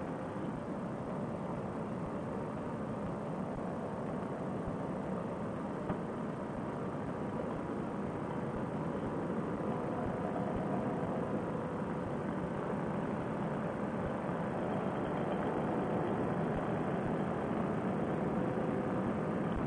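Paramotor engine and propeller running steadily in flight: a continuous drone with a faint hum, heard through a helmet intercom microphone that cuts off the upper frequencies. It grows slightly louder toward the end.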